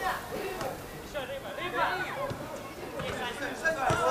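Distant voices calling and shouting across a football pitch: players on the field, heard faintly in short broken calls.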